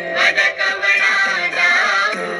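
Marathi devotional song playing: a melody line that bends in pitch over steady instrumental accompaniment, with no clear sung words.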